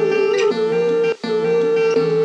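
Background music with plucked strings under a held, slightly wavering melody line; the sound drops out for an instant just past a second in.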